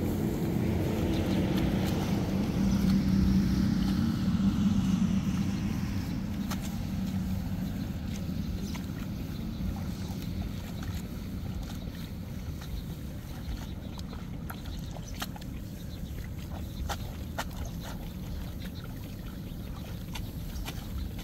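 A motor's low drone, falling slightly in pitch and fading over the first six seconds, then scattered sharp snaps and rustles of young rice seedlings being pulled by hand from wet mud.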